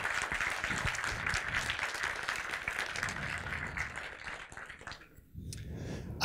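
Audience applauding, a dense run of many hands clapping that thins out and dies away about five seconds in.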